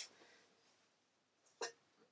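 Near silence: room tone, broken by one brief sharp sound about one and a half seconds in.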